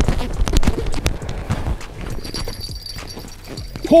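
Hurried footsteps crunching over snow and broken ice, a quick string of knocks and crunches, as an angler rushes to an ice-fishing hole where a fish has taken the bait. Quieter scraping and shuffling follow as he kneels at the hole, with a faint high ringing near the end.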